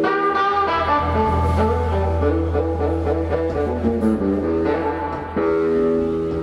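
Live electric guitar, bass guitar and drum kit playing together. The hollow-body electric guitar plays a run of changing notes over a held bass line, then strikes a new sustained chord about five seconds in.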